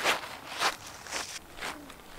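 Footsteps on a dirt and gravel trail, about two a second, growing fainter as the walker moves away.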